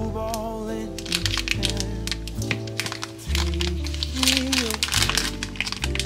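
Crinkling and crackling of the plastic-film wrapper on a log of refrigerated dough as it is cut open and peeled away, most busy a few seconds in, over a song with a singing voice.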